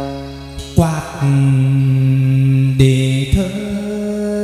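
Hát văn (chầu văn) ritual music: long held, chant-like sung notes, with a few sharp percussion strikes.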